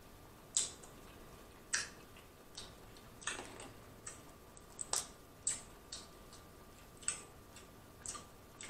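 Close-miked eating of shellfish: faint, irregular sharp clicks and crackles, about a dozen, from shells being pulled apart by hand and from wet mouth smacks while chewing.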